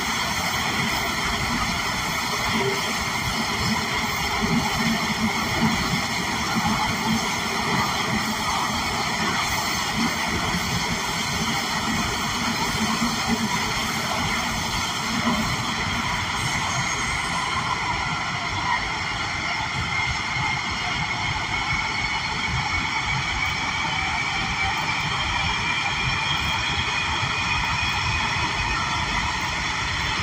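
Running noise heard inside a 1991 Breda A650 subway car in a tunnel: a steady rumble and hiss of steel wheels on rail. Over the last ten seconds or so a faint whine slowly climbs in pitch.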